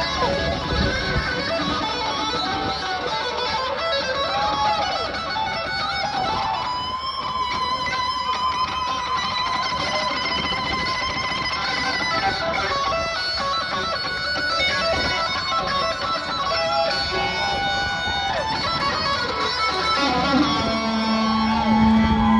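Live rock band playing an instrumental passage led by electric guitar, with bending, sliding notes over the rest of the band.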